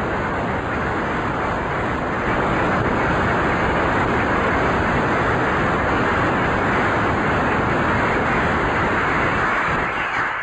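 Audience applauding steadily, a dense, even clapping.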